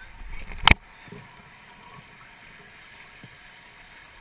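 Steady rush of river water around a kayak in moving current, with one sharp knock just under a second in.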